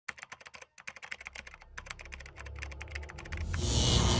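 Intro sound effect: rapid, irregular clicking over a low hum that grows louder. About three and a half seconds in it gives way to a loud burst of hissing noise.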